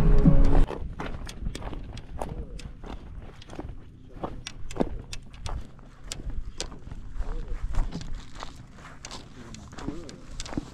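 Music cuts off about half a second in, then footsteps on dry grass and stones, with irregular clicks and knocks a few times a second.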